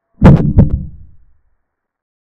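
Chess software's piece-capture sound effect as a knight takes a knight: two sharp knocks about a third of a second apart, dying away quickly.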